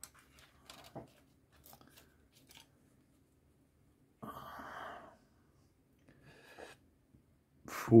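Sprue cutters clipping a plastic model part off its sprue, with a few small clicks of cutting and handling in the first three seconds. About four seconds in comes a short rustling noise lasting under a second.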